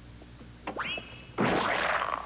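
A thrown custard pie: a short high whistle-like tone that slides up and holds, then a loud splat-like crash about a second and a half in as the pie is flung and lands.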